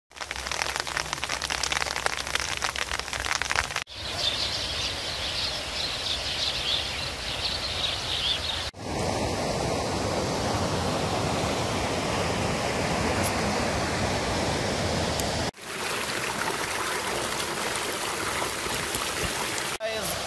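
Steady rushing noise of flowing water, in several takes joined by abrupt cuts a few seconds apart, each with a slightly different hiss.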